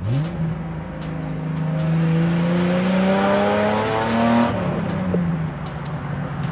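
BMW 635 CSi straight-six engine under hard acceleration, heard from inside the cabin. Its pitch climbs steadily for about four seconds as the revs rise, then drops sharply with an upshift and settles.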